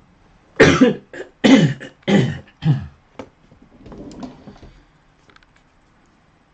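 A man laughing close to a USB microphone in about five loud bursts over two and a half seconds, each dropping in pitch, followed by a softer breathy sound.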